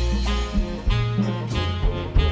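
Live jazz band playing an instrumental passage of a slow ballad: saxophone melody over bass notes and drums.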